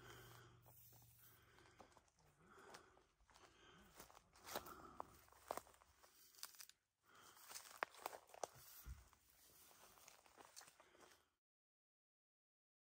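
Near silence with faint rustling and scattered small clicks, like light handling or movement close to the microphone. The sound cuts out completely near the end.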